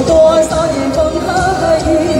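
A woman singing into a handheld microphone, holding one long note with vibrato over an amplified backing track.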